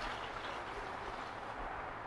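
Blended rice-and-water mixture pouring in a slow, steady stream from a blender jar through a mesh strainer into a plastic pitcher.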